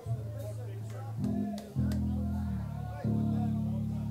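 Amplified electric guitar and bass holding long low notes, changing pitch three times, with people talking in the room behind.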